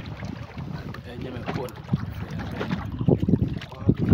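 Wind buffeting the microphone in an open wooden canoe on the water, a low rumble with louder gusts about three seconds in and again at the end.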